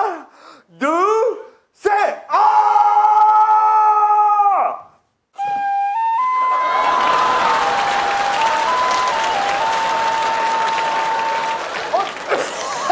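Wavering, squealing tones in the first few seconds, then a plastic recorder playing slow, stepped single notes. From about six seconds in, loud audience applause and cheering run under the recorder.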